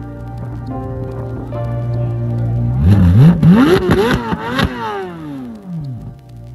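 Chevrolet C8 Corvette Z06's flat-plane-crank 5.5-litre LT6 V8 idling, then revved a few times about three seconds in, the pitch climbing and dropping between blips before falling back to idle.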